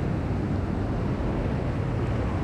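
Steady rush of fast-flowing river water in a narrow canyon: a constant, even wash of noise with no breaks.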